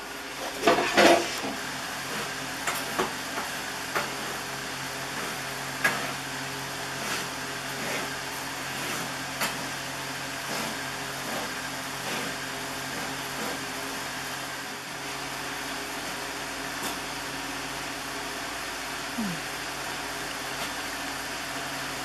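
A steady machine hum runs throughout, with scattered light knocks and scrapes as sourdough loaves are moved around on the floor of a wood-fired brick oven with a peel. There is a louder clatter about a second in.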